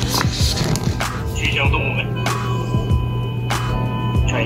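Short electronic music phrases and chirpy sound effects from a children's finger-press talking book's small built-in speaker, over a steady low hum, with a few sharp clicks of a hand pressing the pages.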